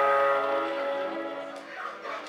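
Live horn section of trumpet, saxophone and trombone holding a sustained chord that gradually dies away, growing much quieter by the end.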